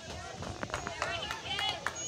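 Distant voices of spectators and players calling and chatting in the background, several at once, with a couple of faint clicks.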